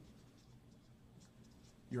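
Marker pen writing on a whiteboard, a faint run of short scratchy strokes as a word is written out.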